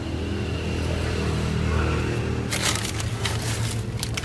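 Dragon fruit stem cuttings being handled and shifted against each other, their waxy, spined stems scraping and crackling in a dense run of rustles from about halfway through. A steady low hum runs underneath.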